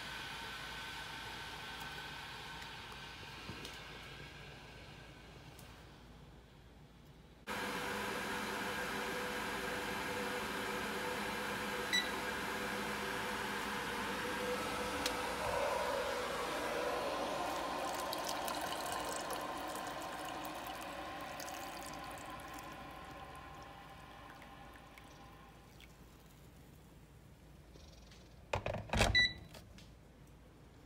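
A kitchen appliance running with a steady hum that slowly fades, broken by an abrupt cut about seven seconds in. A short high beep comes twice, once near the middle and once near the end, the second time with a few sharp clatters.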